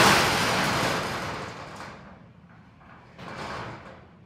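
Corrugated metal roll-up door of a storage unit being pulled down shut, a loud rattle that fades over about two seconds, then a second, shorter rattle about three seconds in.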